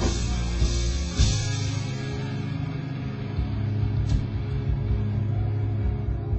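Live rock band with electric guitars and drum kit, bringing a song to a close: loud drum and cymbal hits about a second in, then a low held chord rings on.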